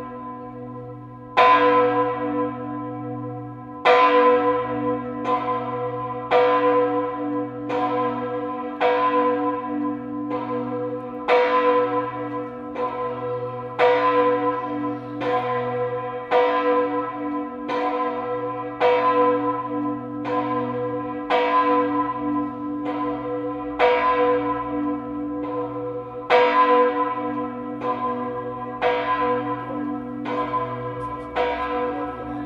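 The Kajetansglocke, a single large bronze church bell (2,384 kg, 1,570 mm, strike note h°/B, cast 1967 by Karl Czudnochowsky), swinging and ringing in a new oak bell frame. Its clapper strikes about every 1.2 s, each stroke ringing out over a steady hum that carries on between strokes.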